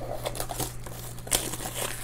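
Handling of a cardboard trading-card box and a foil-wrapped card pack: crinkling and rustling, with one sharper crackle about a second and a half in.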